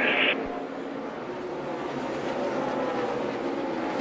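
NASCAR Cup stock cars' pushrod V8 engines running at speed on track, a steady engine drone in which several engine notes overlap.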